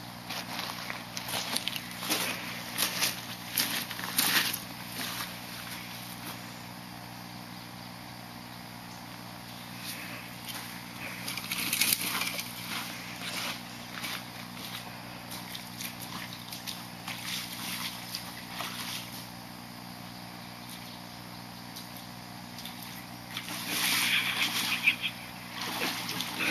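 Footsteps crunching along a creek bank and sloshing through shallow water in irregular bursts, loudest near the end as the walker wades into the creek.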